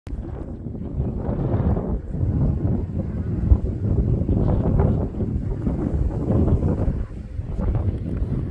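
Wind gusting across the microphone: a loud, uneven low rumble that rises and falls with each gust.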